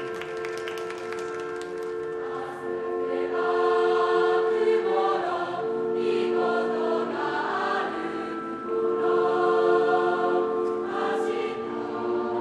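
A wind band playing slow, sustained chords, with a mass of voices singing over them.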